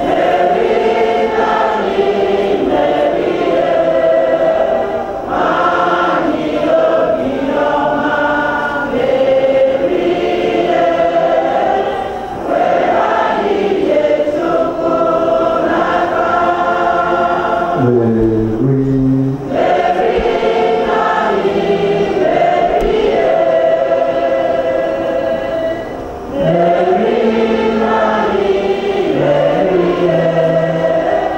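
Many voices singing a hymn together, in long sung phrases with brief breaks between lines.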